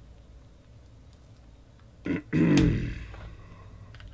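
A man's short wordless vocal sound a little past halfway, loud and falling in pitch, after a couple of seconds of faint room noise.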